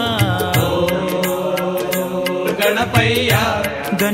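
Telugu devotional song to Ganesha playing, a wavering melody line over a steady percussion beat.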